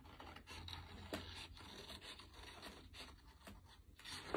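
Scissors snipping through a sheet of construction paper: faint, irregular short cuts with soft paper rustle.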